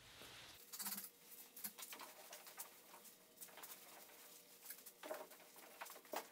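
Faint, scattered rustles and small taps of a person handling a canoe hull and wiping it with a cloth.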